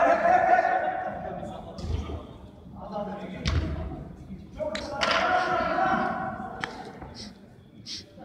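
Footballers shouting to each other across an indoor artificial-turf pitch, with several sharp thuds of a football being kicked, echoing in a large domed hall.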